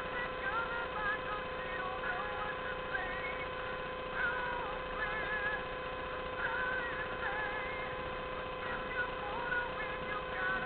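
Faint AM broadcast voice heard through the high-impedance earphones of a passive germanium-diode crystal radio held up to a microphone, over a steady hiss and a constant high tone.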